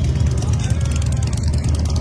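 Wind buffeting a phone's microphone outdoors, a steady low rumble.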